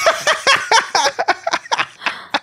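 People laughing: a run of short, breathy bursts of laughter.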